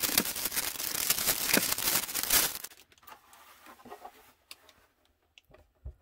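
Plastic wrapping crinkling and tearing as it is pulled off a monitor riser stand, dense for the first two and a half seconds or so, then much quieter with a few light knocks.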